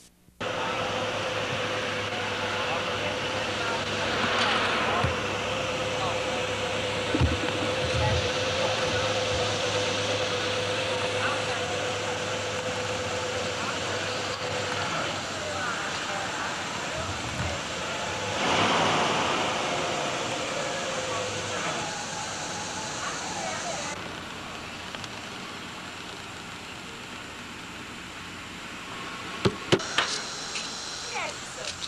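Outdoor street ambience with a steady hiss, cars passing about four seconds in and again louder around eighteen seconds, and a few short knocks.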